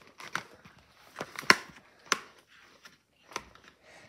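Folded paper and card being handled and set down on a wooden desk: a few sharp crackles and taps over a faint rustle, the loudest about a second and a half in.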